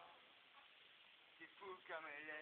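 Quiet room tone, then a young person's voice starting about a second and a half in.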